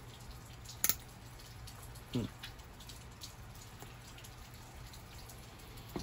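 Steel surgical clamps and forceps being handled: one sharp metallic click about a second in, then a few faint light clinks, over a low steady hum.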